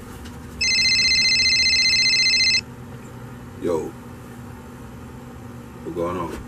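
A telephone ringing: one electronic trilling ring, a buzzing high tone that lasts about two seconds, followed by a short burst of voice.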